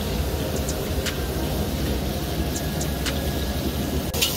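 Steady low roar of the open-flame burners under karahi woks of boiling curry, with a few faint sizzling pops.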